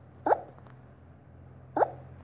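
Two short electronic blips from a tablet colouring app as a colour is chosen and an area filled, each a quick drop in pitch, about a second and a half apart, over a steady low hum.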